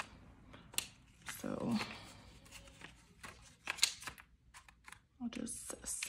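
Paper banknotes and a clear plastic binder envelope being handled: soft rustling with a few sharp clicks, the loudest near four seconds in. A brief murmur of voice comes about a second and a half in.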